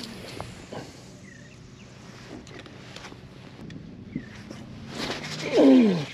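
Quiet open-water background with a few faint chirps. Near the end, a man lets out one loud, drawn-out vocal exclamation that falls steeply in pitch as he hooks a fish.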